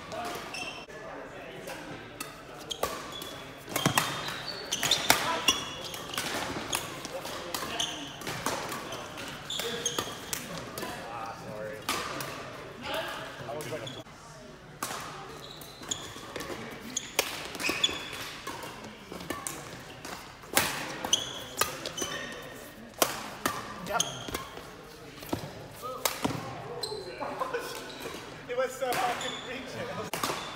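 Badminton doubles rally in a large sports hall: sharp, irregular racket strikes on the shuttlecock and players' footwork on the court floor, echoing in the hall.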